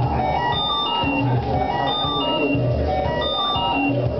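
Electronic music played on synthesizers: a repeating bass figure of short low notes under short, steady high synth notes.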